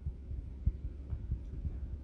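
A pause in speech: a low, uneven rumble with faint irregular thumps, one a little stronger just under a second in.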